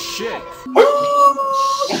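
A wolf howl: one long, steady call that swoops up at the start, beginning about two-thirds of a second in and lasting about a second.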